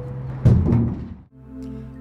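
A single heavy thunk about half a second in, over background music, like a heavy lid or door slamming. The music then gives way to a sustained chord.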